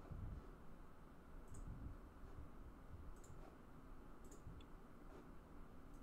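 Near silence with three faint, sharp clicks spaced about a second or two apart, from a computer mouse.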